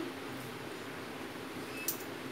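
Faint steady hiss of chicken curry gravy simmering in a metal kadhai on a gas burner, with one short click near the end.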